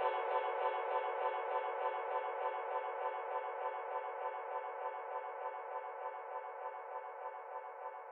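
A sustained electronic chord from the outro of an electronic remix, held with a quick, even pulsing flutter and no bass underneath, slowly fading out.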